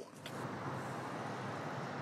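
Steady outdoor street ambience: the even noise of distant traffic.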